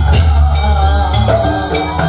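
Jaranan Buto accompaniment music: a Javanese gamelan-style ensemble of drums, gongs and pitched percussion playing, with a low held tone under shifting melodic notes.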